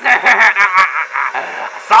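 A man laughing in a quick run of short chuckles.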